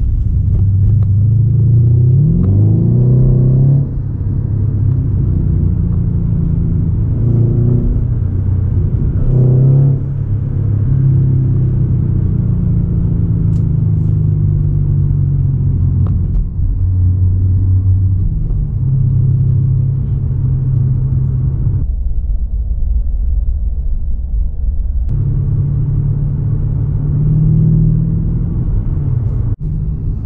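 Mercedes E550 coupe's V8 engine running while driving, heard from inside the cabin as a steady low hum. Its pitch rises under acceleration about two seconds in and again near ten seconds.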